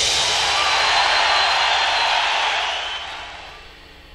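Drum kit cymbals ringing out and fading after the song's final hit, dying away over about three seconds.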